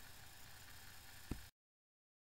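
Near silence: faint room hiss with one soft click about a second and a quarter in, then the sound cuts out completely about one and a half seconds in.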